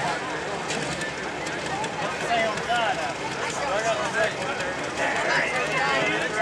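Background voices talking over the low, steady idle of a light pro stock pulling tractor sitting at the line.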